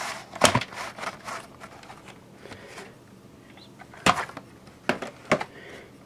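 Hard plastic clicks and knocks of a VHS cassette and its case being handled as the tape is taken out: one sharp click about half a second in, a few smaller ticks, then three more clicks between about four and five and a half seconds.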